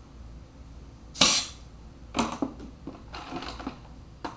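A short, sharp blast of compressed air from a needle-tipped blow nozzle fed by a scuba tank, shot into a lobster leg to blow the meat out, about a second in; a few shorter, weaker bursts and knocks follow near two and three seconds.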